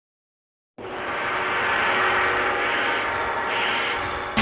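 Silence, then a sustained ringing sound with many steady tones that starts abruptly under a second in and holds to the end, easing slightly near the end.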